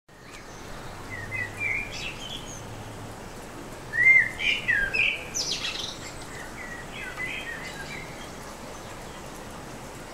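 Birds singing in short chirping phrases in several bursts, loudest about four seconds in, over a light steady background hiss.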